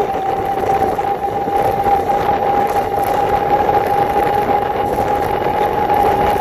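Overvolted 500 W motor of an E300 electric scooter running at speed, a steady high whine rising slightly in pitch, with wind rushing over the microphone.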